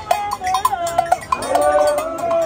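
A crowd of marchers chanting together in wavering tones, with a handheld metal bell struck now and then.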